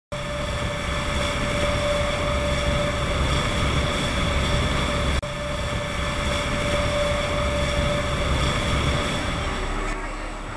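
Tour boat's engines running, a steady drone with a low rumble and a high whine; the sound drops out briefly and resumes about five seconds in.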